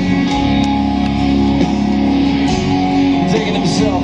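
Live band playing an instrumental, guitar-led passage of a country-rock song, with electric guitar chords ringing over the bass.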